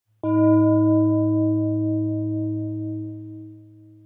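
A singing bowl struck once just after the start, its deep hum and several higher tones ringing on together and slowly fading away over about three and a half seconds.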